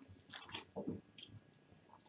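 A man drinking Irn-Bru from a can, with a few faint swallows in the first second or so.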